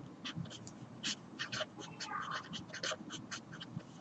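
Marker pen writing on paper: a quick run of short, high squeaks and scratches, one per pen stroke, with a slightly longer squeak a little after two seconds in.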